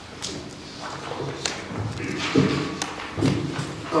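Meeting-room background noise in a large hall: a few sharp clicks and low thumps, with faint voices in the second half.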